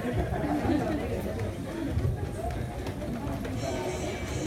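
Indistinct chatter of several people talking. Music starts up near the end.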